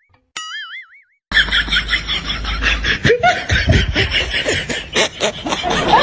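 A cartoon "boing" sound effect with a wobbling pitch, heard twice within the first second or so. After it comes a busy stretch of background music mixed with laughter.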